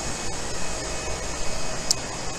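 Steady workshop background noise: a constant even hiss and hum from ventilation and running equipment on the factory floor, with a few faint steady tones in it. A very short high hiss comes near the end.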